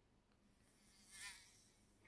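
Near silence between music-track previews, with a faint, wavering buzz that swells about a second in and fades out.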